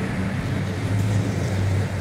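A car engine idling steadily with a low, even hum.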